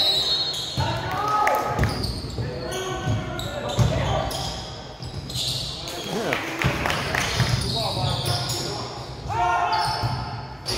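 Basketball bouncing on a hardwood gym floor amid players' and spectators' voices, echoing in a large gymnasium.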